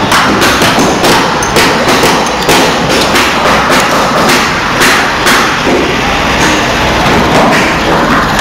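Hammer blows on metal press moulds, about three a second at an uneven pace: porcelain being hammer-pressed.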